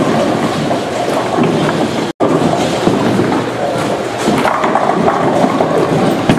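Busy bowling alley din: bowling balls rumbling down the lanes and pins crashing across the house, over crowd chatter. The sound drops out for an instant about two seconds in.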